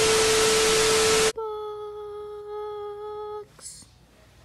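TV-static glitch sound effect: a loud burst of hiss with a steady beep tone, cutting off suddenly about a second in. It is followed by a softer hummed note held steady for about two seconds, sagging slightly in pitch.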